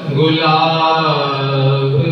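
A male naat reciter chanting an Urdu naat in a melodic, devotional style. A new phrase begins just after a short breath at the start, with long held notes that bend and waver in pitch.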